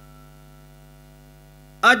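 Steady electrical mains hum from a microphone and loudspeaker system, with a man's voice starting again just before the end.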